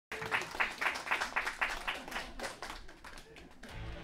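Audience clapping in an even rhythm, about four claps a second, dying away after two and a half seconds. A low hum starts near the end.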